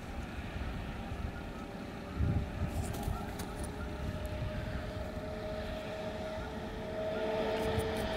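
Steady low drone of a distant engine, with a faint steady two-note hum that grows a little louder near the end.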